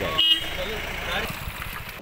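Outdoor roadside ambience: steady traffic noise with faint background voices, and a brief high-pitched toot about a quarter second in.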